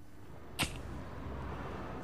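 A cigarette lighter struck once, with a short sharp rasp, followed by a steady hiss as it burns.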